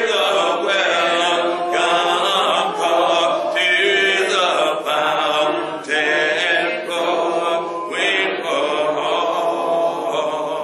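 A hymn sung a cappella: unaccompanied voices holding long notes in phrases of a second or two.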